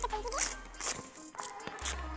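The zipper on a Mahindra Thar soft top's rear side window being pulled open in several short strokes, over background music.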